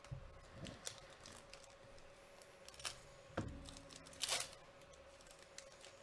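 Hands handling Bowman Chrome trading cards and a foil pack wrapper on a table: scattered soft taps and clicks, with a short, louder crinkle of the wrapper a little after four seconds in.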